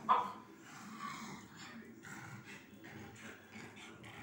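A pug gives one sharp bark at the start, falling in pitch, with a weaker call about a second later.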